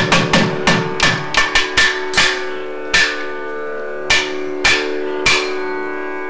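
Thavil drums struck hard and crisply, the strokes slowing from a quick run to single beats spaced about half a second to a second apart. A steady drone holds on one pitch underneath.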